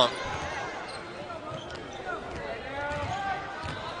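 Basketball being dribbled on a hardwood court, with indistinct voices in the arena behind it.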